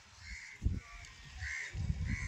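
A few short caws from a bird, the loudest a little past the middle, with gusts of wind rumbling on the microphone.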